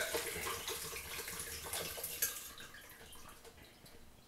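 Coconut water draining out of a hole in an upturned young coconut, trickling through a strainer into a Vitamix blender jar; the flow slowly thins and grows fainter.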